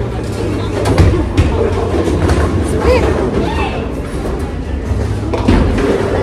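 Bowling alley din: a steady low rumble with a few sharp knocks, about a second in and again near the end, over background music and voices.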